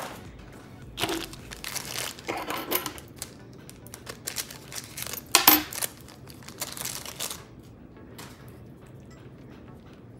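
Small plastic packages being handled and rummaged through: irregular rustling and light clicking, with one sharper click about five and a half seconds in, trailing off near the end.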